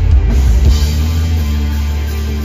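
Punk rock band playing live: distorted electric guitars and bass over a drum kit, loud through the stage PA. Drum hits in the first second, then a held chord.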